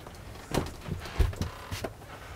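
Footsteps on a wooden floor: a few soft thuds and knocks, one heavier thud a little past the middle.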